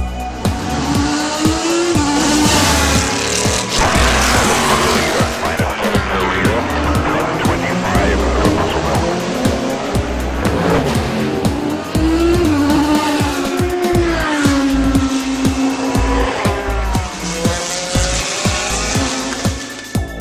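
Sports-prototype and GT race car engines at racing speed. Their pitch rises and falls repeatedly as the cars pass and change gear, with one held note from about 14 to 16 seconds in. Background music with a low beat plays under the engines.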